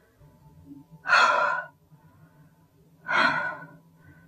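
A woman's two loud, breathy gasps, about two seconds apart.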